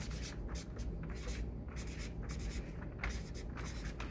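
Red felt-tip marker writing on chart paper: a run of short, scratchy strokes as a word is written out letter by letter.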